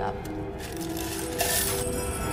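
Metal chain clinking and rattling as it is paid out hand over hand down a hole, with a brighter burst of rattling near the end, over sustained music tones.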